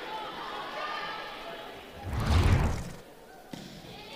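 A single heavy thud about two seconds in, a volleyball landing on the court floor, over faint arena background noise.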